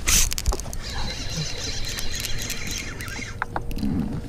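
A brief rush of noise, then a baitcasting fishing reel being cranked to bring in a hooked bass: a steady high whirring that stops shortly before the end.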